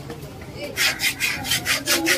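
Large knife sawing back and forth through a yellowfin tuna loin and scraping on a wooden chopping block: a quick run of rasping strokes, about five a second, starting less than a second in.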